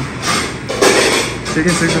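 People talking in a busy kitchen, with a brief burst of noise about a second in.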